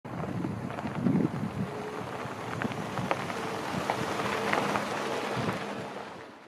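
Jeep driving on a gravel road, its tyres crunching and popping over loose stones under a low engine hum, with wind noise on the microphone. The sound fades out near the end.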